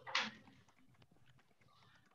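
A brief breathy voice sound at the start, then faint irregular clicks and ticks over a video-call line.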